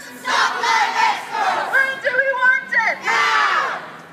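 Protest chant in call-and-response: a single leader's voice shouting through a megaphone alternates with a crowd of marchers shouting back in unison, about twice.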